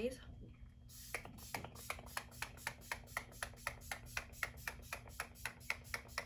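Rapid pumps of a NYX Bare With Me setting spray bottle misting the face, about five quick spritzes a second, starting about a second in.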